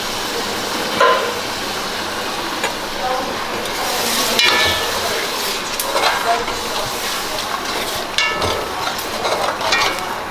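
A spoon stirring coconut-milk curry in a large aluminium pot, scraping and clinking against the metal several times in the second half, over a steady hiss.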